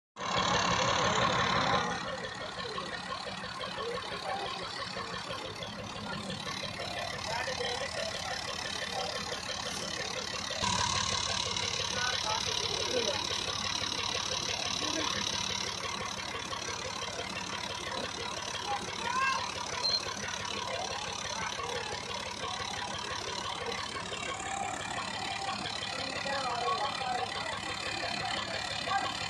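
Farm tractor's diesel engine idling steadily, getting a little louder about ten seconds in, with men's voices talking over it. The first two seconds carry a louder burst of noise.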